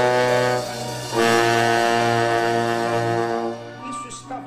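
Two long held chords from bass trombone and alto saxophone over a steady low note: the first breaks off just after half a second in, and the second comes in about a second in and is held for over two seconds.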